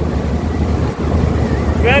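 Steady noise of a motorboat under way, its motor running with wind rumbling on the microphone. A man's voice starts right at the end.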